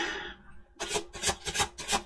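A deck of tarot cards being shuffled by hand: a quick run of short strokes, several a second, starting about a second in.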